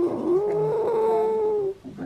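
A pug giving one long, steady whine of about a second and a half while its face is stroked.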